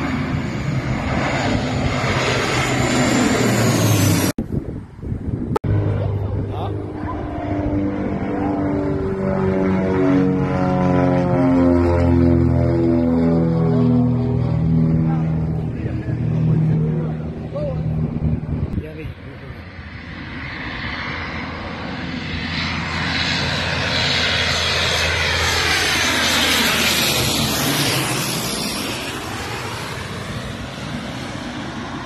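Twin-engine turboprop airliners flying low overhead on approach to land. One passes with a propeller hum made of several tones that slide steadily down in pitch as it goes by. Near the end a second approach brings a rushing engine noise that swells for several seconds and then eases.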